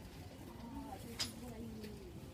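A faint, drawn-out voice with slowly falling pitch, and a single sharp click about a second in.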